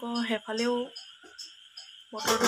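Insects chirping steadily in the background: a continuous high trill with short, evenly repeated high chirps. A woman's voice speaks briefly at the start.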